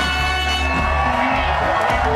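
Live band playing a hip hop track through a club PA, with a strong steady bass line, and a rapper's voice into the microphone over it.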